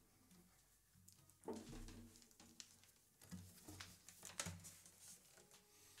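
Faint handling noise in a small room: soft knocks and rustles as an acoustic guitar is lifted and settled on its strap, with three slightly louder knocks spread through.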